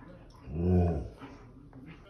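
A Siberian husky gives one low, pitched grumbling call of about half a second, starting about half a second in. The owner takes it as the dog complaining at having lost a tug-of-war.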